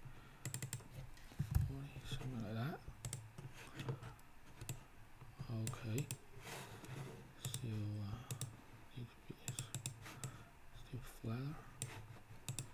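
Computer keyboard typing and mouse clicks: scattered short, sharp key taps and clicks, irregularly spaced, some in quick runs.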